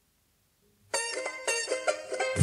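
Near silence, then about a second in a song starts suddenly on a plucked string instrument playing a run of quick picked notes.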